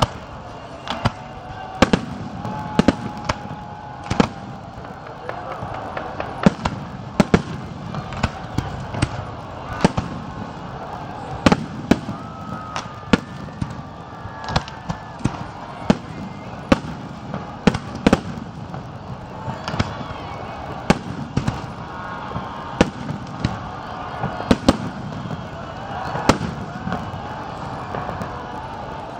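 Fireworks display: shells bursting in sharp bangs at irregular intervals, sometimes several in quick succession.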